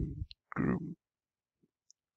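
A man's speaking voice trailing off in a couple of short fragments, then silence for about the last second.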